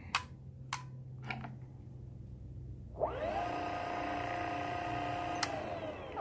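Electric skateboard's dual brushless DC hub motors spinning the wheels under the remote's throttle: a few light clicks, then about halfway through a whine that rises quickly, holds steady for a couple of seconds, and winds down after a sharp click near the end as the brake is applied.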